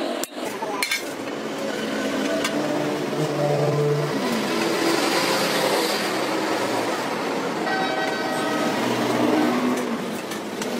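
A few sharp hammer blows on a steel spade blade on an anvil in the first second. They are followed by a steady busy din with sustained horn-like tones and distant voices.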